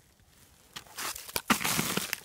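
Footsteps crunching and rustling in thin snow and dry fallen leaves, starting nearly a second in and getting louder, with irregular sharp crackles.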